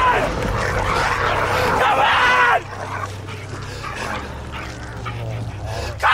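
A man crying out in anguish: loud wavering wails for the first two and a half seconds, then quieter whimpering cries. A low steady hum runs underneath.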